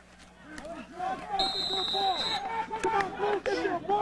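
A referee's whistle blows one steady shrill note for about a second, starting about a second and a half in, over voices talking.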